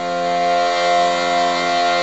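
Piano accordion holding one steady, sustained chord.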